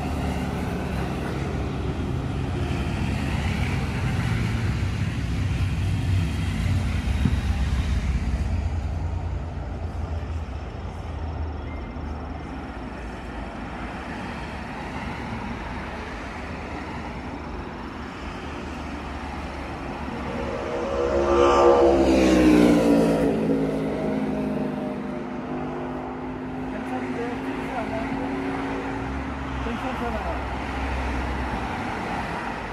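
Road traffic running steadily on the road beside the lot. About two-thirds of the way through, one vehicle passes close and loud, its engine pitch dropping as it goes by.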